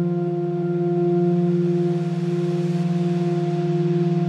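Drone ambient music: several low sustained tones held steady and layered, the lowest one with a fast, even flutter. A soft hiss swells and fades over the middle of the passage.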